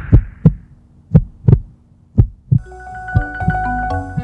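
A heartbeat: double lub-dub thumps about once a second, three beats in a row. About two and a half seconds in, music with steady held notes comes in over it, and the beat carries on underneath.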